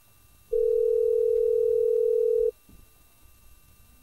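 Telephone ringback tone heard through a computer web call: one steady two-second ring, meaning the line is ringing at the far end and has not yet been answered.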